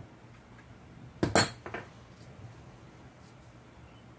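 Metal hand tools clinking against each other or the engine: two sharp clinks close together a little over a second in, then a fainter third.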